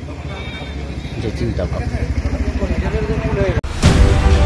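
A man's voice speaking over a steady low hum. It cuts off abruptly near the end, giving way to a short whoosh and the start of a news channel's theme music.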